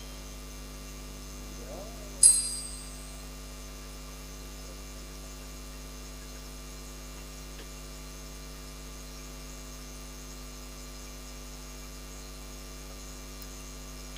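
Steady electrical mains hum in the recording, a low buzz with several overtones, left in because the noise could not be removed. About two seconds in there is one short click with a brief high ring.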